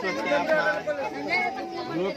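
Only speech: several voices talking over one another.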